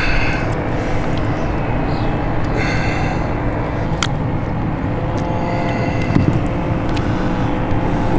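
Steady low rumble with a faint hum, the background noise of a boat on open water, and a single sharp click about four seconds in.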